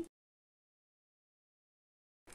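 Complete silence: the sound drops out entirely just after a spoken word ends, with not even room tone left.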